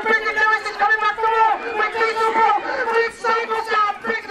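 A man's race commentary, spoken continuously, with crowd chatter underneath.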